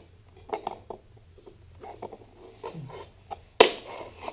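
IKEA Lillabo wooden toy train track pieces clacking and knocking against each other and the floor as they are handled and fitted together, a scatter of light clicks with one sharper knock near the end.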